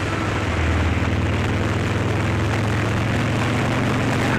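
A vehicle's engine running steadily at cruising speed, a low drone under wind and road noise as it travels along the road.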